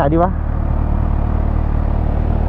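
Big sport motorcycle on the move: a steady rush of wind noise on the rider's microphone over the engine's low, even drone. A few words of speech at the very start.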